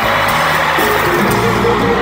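Live bachata band playing an instrumental passage with guitar and keyboard, no vocals, heard from the audience in a large arena.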